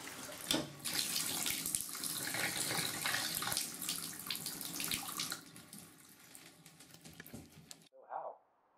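Shower water spraying into a bathtub, a steady hiss; a little after five seconds in it falls away to a quieter trickle, and the sound cuts off just before the end.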